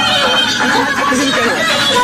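Loud DJ music from a large outdoor speaker rig, in a stretch without the bass beat: wavering, gliding pitched sounds layered over one another.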